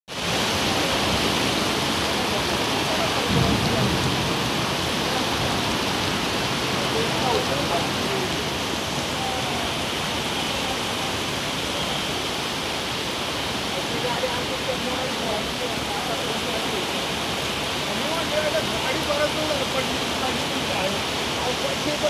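Torrential monsoon rain and fast-flowing floodwater rushing across a road: a steady, loud rush of water, with a brief low rumble about three seconds in and faint voices later on.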